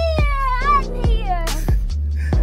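Background music: a beat-driven track with a deep steady bass, a drum hit about twice a second, and a high, sliding, meow-like vocal melody.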